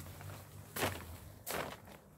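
Two crinkling rustles of a plastic harvesting sheet, about 0.8 s and 1.5 s in, like footsteps shifting on the tarp spread under an olive tree.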